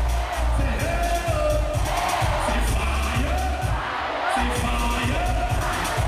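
Live dancehall/ragga music through a loud concert PA, heavy pulsing bass with a voice singing over it and the audience crowd audible beneath.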